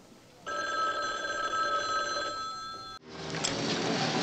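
A sustained electronic tone, several steady pitches sounding together, starts about half a second in, holds for about two and a half seconds and cuts off abruptly. Plain room noise follows to the end.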